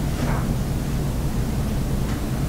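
Steady background noise: an even hiss with a low hum underneath.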